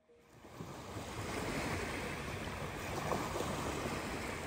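Small waves breaking gently and washing up a sandy beach, a steady wash of surf that fades in over the first second.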